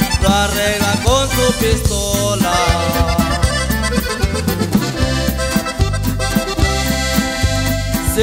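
Norteño corrido instrumental interlude: accordion playing melodic runs over a steady bass line and drum beat, with no singing.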